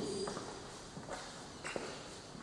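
A few footsteps on a wooden parquet floor as someone walks across the room.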